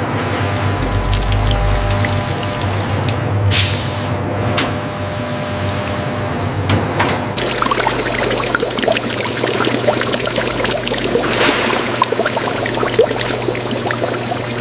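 Red wine pouring in a steady stream into a stainless steel vat, over background music.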